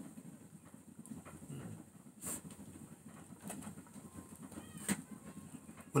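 Quiet room with a few light clicks and taps from small bottles of black seed tablets being handled, and a faint bird call about four and a half seconds in.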